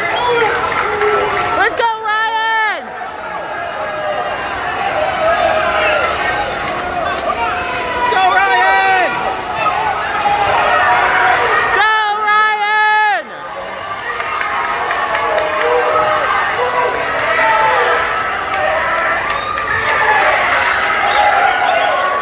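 Crowd of swim teammates yelling and cheering a swimmer on at poolside, many voices overlapping, with a long, loud shout about two seconds in and another around twelve seconds in.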